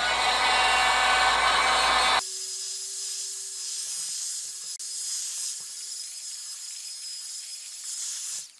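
Electric heat gun blowing hot air, its fan motor running steadily. About two seconds in the sound changes abruptly to a quieter, higher hiss with a steady hum, which sinks slightly in pitch near the end.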